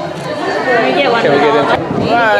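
People talking, several voices overlapping in chatter.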